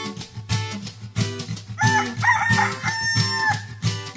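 An upbeat strummed acoustic-guitar jingle, with a rooster crow sound effect over it about two seconds in that lasts about a second and a half.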